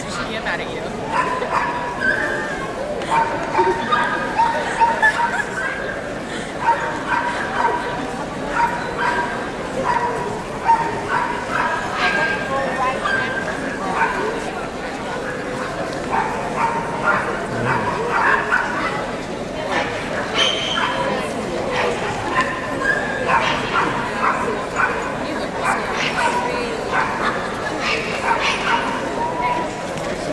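Dogs yipping and barking in short, high-pitched calls over and over, over steady crowd chatter.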